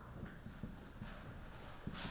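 Felt-tip marker writing on a whiteboard: faint scratches and taps of the tip on the board, with a sharper tap just before the end.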